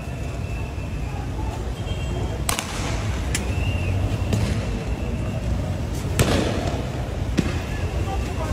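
Four sharp bangs, the one about six seconds in the loudest, over a steady rumble of street and crowd noise.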